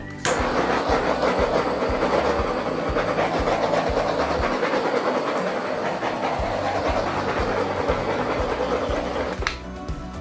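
Handheld gas torch flame hissing steadily for about nine seconds, played over wet acrylic pour paint to pop its air bubbles; it cuts off near the end. Background music with a steady beat underneath.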